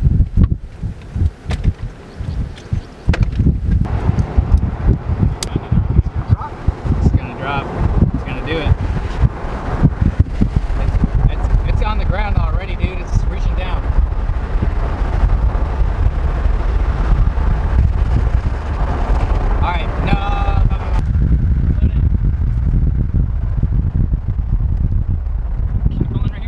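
Strong wind buffeting the microphone as a dense, fluctuating low rumble that sets in about three seconds in. Voices cut through briefly twice, a little before halfway and again later on.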